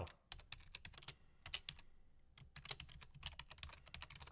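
Faint clicking of a computer keyboard being typed on, single keystrokes coming in quick, irregular runs.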